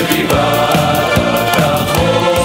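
Mixed choir of men and women singing a medley of Six-Day War songs, over instrumental accompaniment with a steady beat.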